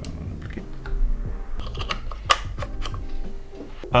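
Scattered clicks and light knocks of a DJI RS2 gimbal's plastic and metal parts being handled and fitted together, with one sharper click a little after two seconds in.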